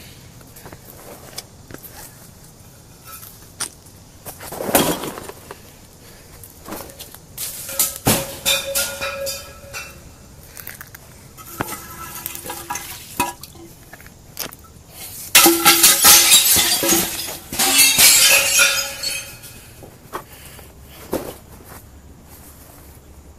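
Glass bottles thrown down and smashing: a few separate crashes, then a longer, loud spell of shattering and clinking glass in the second half.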